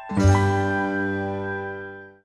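Audio logo sting: a sudden hit with a bright shimmer, then a deep ringing chime chord that fades slowly and cuts off just after the end.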